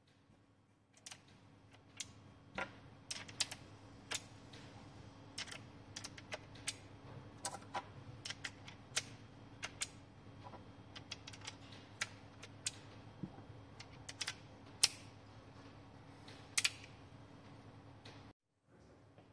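Irregular small metallic clicks and taps from an Umarex Colt Peacemaker air pistol being reloaded by hand. With the hammer at half cock, the cylinder is turned and pellet shells are pushed in one by one, with the sharpest clicks near the end.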